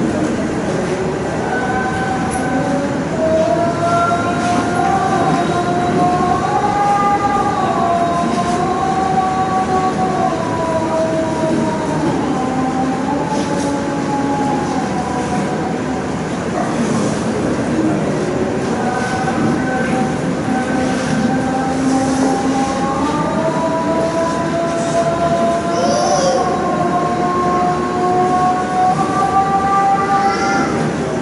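A man's voice chanting verse in long, slowly wavering held notes into a microphone, over a steady background hiss.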